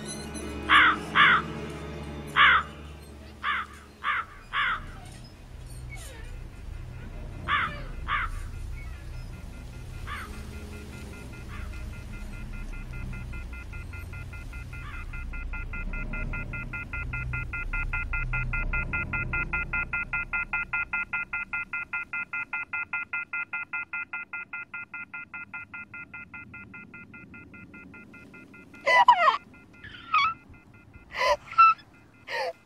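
Film soundtrack: a low drone with short chirps, then a rapidly pulsing high buzz that swells and slowly fades, cut by a brief loud sweeping sound just before the end.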